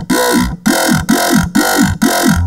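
Dubstep-style growl bass from Ableton's Operator synth, run through overdrive, phaser and flanger. It plays as a run of short gritty notes about half a second long, each with a fast, repeating up-and-down sweep in its tone.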